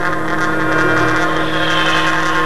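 Jazz ensemble music: several wind instruments hold long, overlapping steady tones that form a sustained droning chord.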